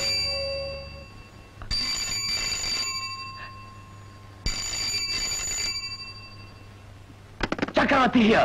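Desk telephone ringing twice, each ring about a second long and the two about three seconds apart. Near the end come a few sharp clicks as the handset is lifted.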